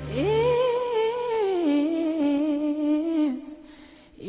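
Background music: a solo woman's voice holds one long sung note with vibrato, gliding up at the start, stepping down in pitch about halfway, then stopping near the end.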